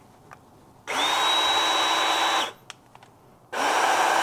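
Ryobi cordless PEX clamp tool's motor run twice on the trigger. Each run winds up quickly to a steady whine and stops after about a second and a half; the second starts about three and a half seconds in.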